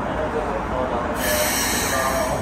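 Keikyu 600-series electric train starting to move out of the station, with a sharp hiss of air beginning about a second in.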